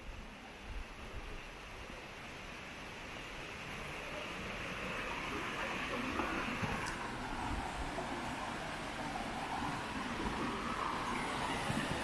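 Stream water rushing over rocks below a footbridge: a steady rush that grows gradually louder.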